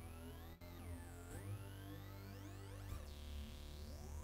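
Sustained synthesizer tone run through Bitwig's Phaser effect, its phasing sweeping down and up in pitch several times, about every one and a half to two seconds, over a steady low drone. With the phaser's LFO switched off, the sweep comes from its frequency control being moved by hand.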